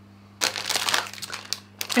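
Clear plastic packet crinkling as it is picked up and handled. The crackling starts just under half a second in, runs for about a second, stops briefly, and starts again near the end.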